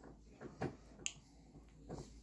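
A few faint, short wet clicks and smacks: a toddler's mouth working on a plastic spoon of yogurt.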